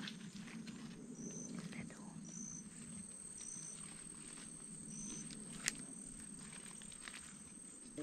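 Quiet tropical rainforest ambience: a short high-pitched chirp repeats four times, roughly a second apart, and a single sharp click comes a little past halfway.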